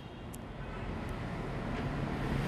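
Steady background noise, a low rumble with hiss, slowly growing a little louder, with a faint tick shortly after the start.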